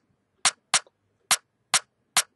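Afrobeats-style percussion pattern played back from an FL Studio step sequencer: a syncopated string of short, crisp, high percussion hits, four in about two seconds, with no kick or bass under them.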